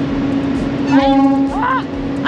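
Steady engine hum of a car ferry under way, one low tone throughout, with a person's voice briefly about halfway through.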